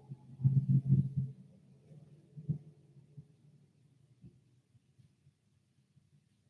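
A few soft, low thuds: a quick cluster of about four in the first second and a single sharper one about two and a half seconds in, then only faint ticks.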